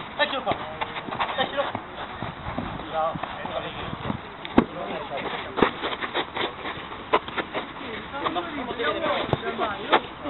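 Players calling out during a five-a-side football match, with several sharp thuds of the ball being kicked, the loudest about halfway through.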